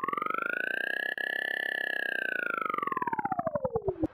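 Synthesized intro sound effect: a rapidly pulsing electronic tone that sweeps up in pitch, peaks about a third of the way in, and slides back down. It cuts off suddenly at the end.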